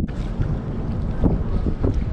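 Wind buffeting the camera microphone: a steady low rumble, with a couple of faint knocks about midway.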